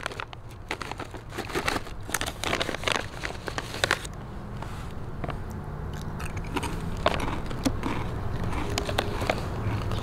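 A chip bag crinkling as potato chips are taken out, and a person crunching and chewing the chips. The sharp crackles are dense for the first four seconds, then thin out to occasional crunches.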